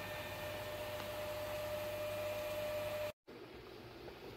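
Steady hiss with a faint, even hum running through it. It breaks off suddenly about three seconds in and gives way to a fainter hiss.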